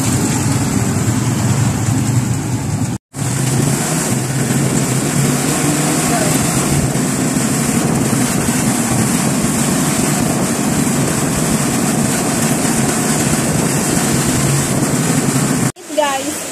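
Motorcycle engine of a tricycle (motorcycle with sidecar) running steadily under way, with road and wind noise on the microphone. The sound cuts out for a moment about three seconds in.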